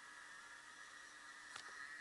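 Near silence: steady faint hiss of room tone, with one faint click about one and a half seconds in.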